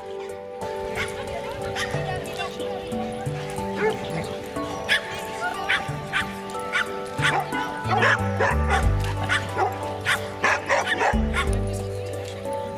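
Dogs barking and yipping in play, a run of short sharp barks thickest from about the middle to near the end, over background music.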